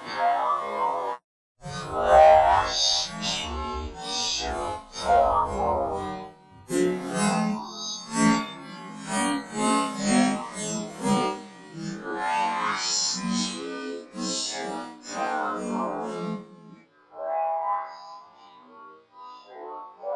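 A cartoon voice clip slowed down four times and run through stacked audio effects. It comes out as a warbling, music-like sound, chopped into short segments, with a brief dropout about a second in and a quieter stretch near the end.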